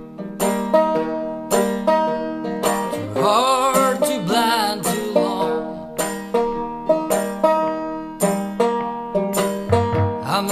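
Fingerpicked banjo in a folk-blues song, playing a steady run of plucked notes, with a brief wavering melodic line over it about three seconds in.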